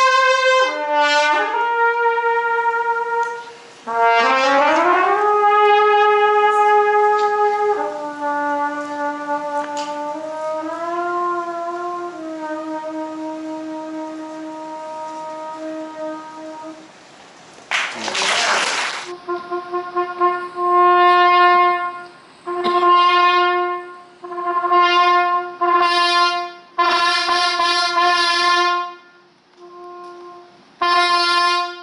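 Harrelson Custom trumpet played solo: long held notes with slurred upward slides between them in the first half, then, after a short burst of noise about eighteen seconds in, a run of short tongued notes repeated mostly on one pitch.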